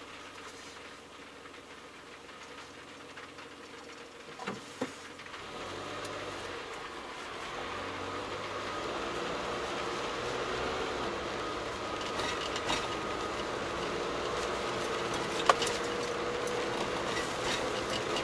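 Inside a car's cabin: the engine runs quietly at a standstill, then engine and tyre noise grow louder from about five seconds in as the car pulls away and drives on. Two clicks come about five seconds in and a sharp click later on.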